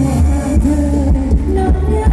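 Loud Thai ramwong dance music from a live band, with a heavy bass and a melody line running over it.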